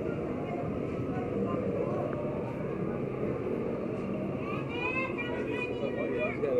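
Busy street noise: a steady rumble of passing traffic mixed with people talking nearby, with one voice standing out close by near the end.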